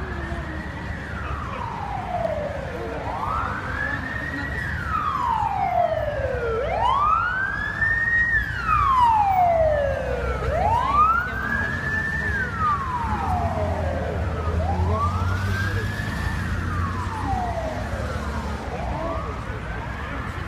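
Police car siren wailing in slow, even sweeps: the pitch rises for about a second and a half, then falls for about two seconds, repeating about every four seconds. A second, fainter siren overlaps it, over a low traffic rumble.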